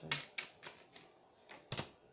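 Tarot cards being shuffled and flicked while a clarifying card is drawn: a handful of sharp, irregularly spaced card snaps.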